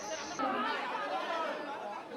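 Crowd chatter: several people talking over one another, no single voice standing out.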